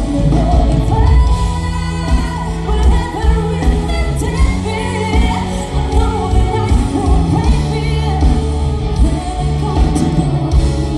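Live band playing a pop song through a large concert PA, with a lead vocalist singing into a microphone over a steady, heavy bass, heard from the audience.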